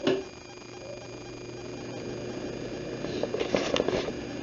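Handling noise from a handheld camera: a sharp knock right at the start, a low steady hum, and a burst of rustling and clicks near the end.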